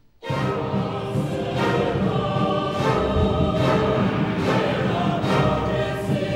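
Mixed choir and orchestra in an opera performance, coming in suddenly and loudly about a quarter second in after near silence. The choir sings in French over the orchestra, with strong accents a little under a second apart.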